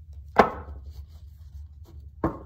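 A single sharp knock about half a second in, as a deck of tarot cards is handled against a tabletop, with only faint handling sounds after it.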